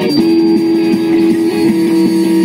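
Live rock band playing, electric guitar to the fore over bass, with one note held steady for about a second and a half.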